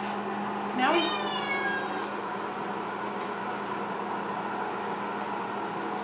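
A cat meowing once, about a second in: a single call that rises and then falls in pitch.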